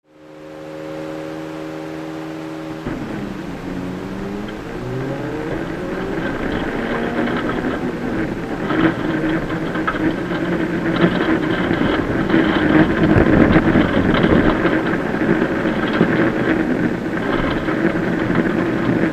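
Citroën C2 VTS rally car's 1.6-litre four-cylinder engine heard from inside the cabin: held at steady revs for about three seconds, then the car pulls away and the engine climbs in pitch through the gears. From about eight seconds in, gravel rattles and crackles under the car along with the engine running hard.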